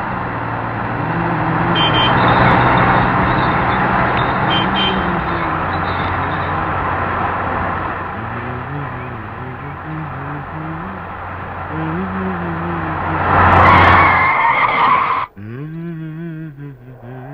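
Car running with steady road and engine noise under a low tone that wavers in pitch, swelling louder near the end and then cutting off suddenly.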